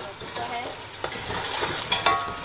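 A metal ladle stirring boiled chickpeas frying in masala and yogurt in a metal pot, with a steady sizzle and the ladle scraping and clinking against the pot, sharpest near the end.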